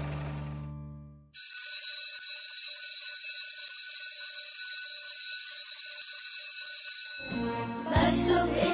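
An electric school bell ringing steadily for about six seconds, then cutting off. Music fades out just before it, and music comes in again near the end.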